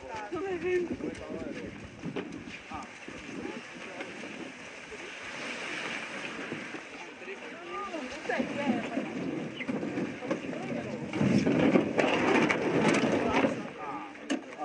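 Indistinct overlapping voices of children talking outdoors, with a louder rushing, scraping noise for about two seconds near the end.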